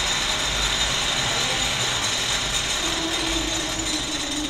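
Jet car's jet engine running steadily: a loud, even rush of air with a steady high whine, and a lower hum joining near the end.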